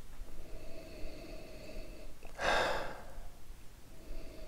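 A single sniff through the nose, about half a second long and a little past halfway, as a person noses whisky in a tasting glass.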